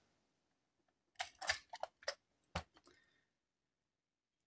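A few short clicks and knocks from a Deli rotary crank pencil sharpener being handled as the sharpened pencil is released from its clamp and taken out, starting about a second in, with one louder knock near the end of the cluster.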